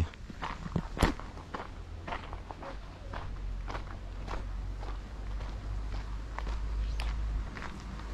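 Footsteps on a dirt road, a series of short steps over a steady low rumble.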